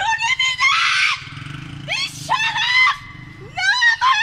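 A woman screaming and shouting in high-pitched cries, several short outbursts with brief gaps between them, and a short hiss of noise about a second in.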